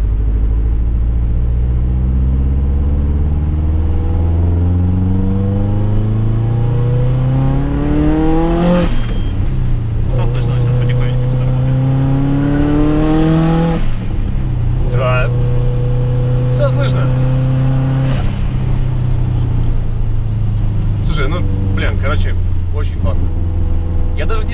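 Turbocharged 2-litre flat-four of a Subaru Forester SG5 accelerating hard, heard from inside the cabin: the engine note climbs steadily, drops at a gear change about nine seconds in, climbs again and drops at a second shift near fourteen seconds, then settles into steady cruising with one more drop near eighteen seconds.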